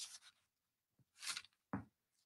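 Faint rustle of paper pages being turned in a book: three short brushes, with a slightly fuller one near the end.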